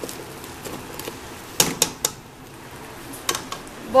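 Light clicks and clatter of a plastic spoon against a pot of diced potatoes being stirred, with a few quick sharp taps about a second and a half in and one more near the end.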